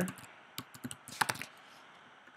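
Computer keyboard being typed on: a quick run of about ten keystrokes typing a short word, stopping after about a second and a half.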